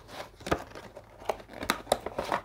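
Small cardboard box being opened by hand, its paperboard flaps and inner tray rustling and scraping. A few sharp snaps come through, the loudest about half a second in and twice near the end.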